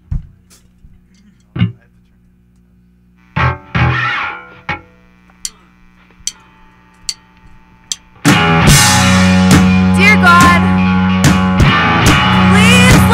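Electric rock band starting a song: over a steady amplifier hum come a few isolated string plucks and a short strum, then four evenly spaced clicks under a second apart, a count-in, and about eight seconds in the full band of electric guitar, bass and drum kit comes in loud.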